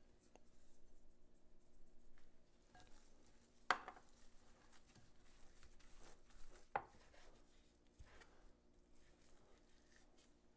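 Faint squelching and rustling of gloved hands mixing ground beef and cheese in a glass bowl, with a couple of sharp knocks, the louder one about four seconds in.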